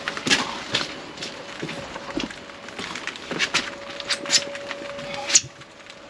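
Footsteps on wet block paving: irregular short scuffs and knocks, with a faint steady hum underneath that stops with a louder knock near the end.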